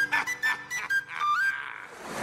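High, flute-like whistle playing a quick run of short notes as the closing flourish of a cartoon theme tune, ending on an upward slide about a second and a half in.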